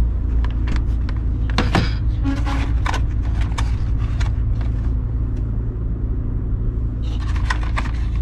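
Plastic food packaging handled on a counter: a cherry-tomato clamshell clicking and a plastic bread bag crinkling, the crackle densest near the end. A steady low rumble runs underneath.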